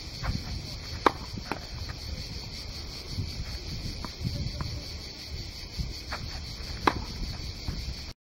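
Tennis ball struck by a racket on a serve: a sharp crack about a second in, a softer knock half a second later, and another sharp hit near the end, over a low rumbling background.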